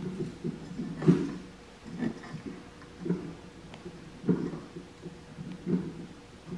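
Soft knocks and rubbing from a mower deck's belt, pulley and spring tensioner being worked by hand while the belt is pushed onto the pulley under tension, with a sharper knock about a second in.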